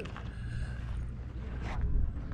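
Low, steady wind rumble on the microphone, with faint talking of other people in the background.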